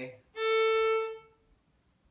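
Fiddle bowing a single note on the open A string, held steady for about a second and then stopped cleanly so the string falls silent. This is the full stop of a stop-and-rock string-crossing exercise.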